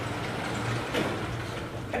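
Steady scratching noise of writing by hand, with a low hum underneath.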